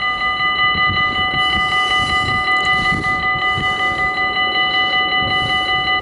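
Dutch level-crossing warning bell ringing in rapid strokes, several a second, with a low rumble underneath; it cuts off suddenly at the very end.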